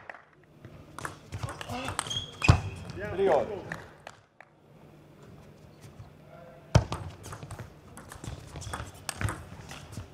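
A table tennis ball clicking off the bats and the table in a quick rally, starting about seven seconds in. A voice is heard a few seconds earlier.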